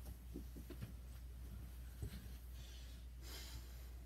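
Faint handling and movement noise from a person moving about close by: a few light clicks and knocks and a soft rustle, over a steady low hum.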